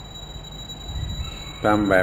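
Pause in a Thai monk's recorded dhamma talk, filled only with the steady low rumble and hiss of the old recording's background noise; his voice comes back near the end.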